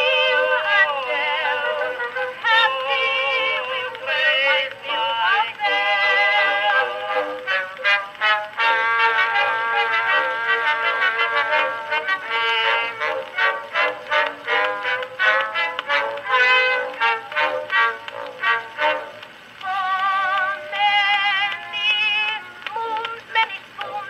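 An Edison Amberola 30 cylinder phonograph playing a 1912 Edison Blue Amberol record: an acoustic-era song recording with orchestral accompaniment, its melody carried with heavy vibrato and its sound narrow and thin, with little bass or treble.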